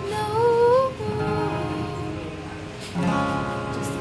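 A woman's voice holds a sung note over a steel-string acoustic guitar. The voice stops about a second in, leaving the guitar strumming chords alone, with a fresh strum about three seconds in.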